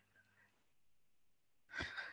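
Near silence, then a short, soft intake of breath near the end as the speaker draws breath before speaking.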